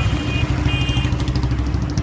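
Motorcycle engine running close by over the general noise of road traffic.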